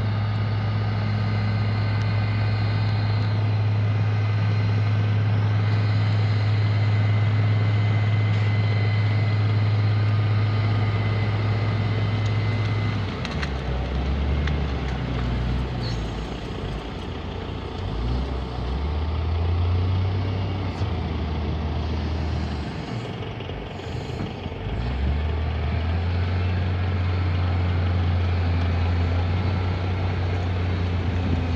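Volvo L60 wheel loader's six-cylinder diesel engine working hard while pushing brush, running at a steady pitch at first, then dipping and wavering in pitch through the middle as the load changes, and steadying again near the end.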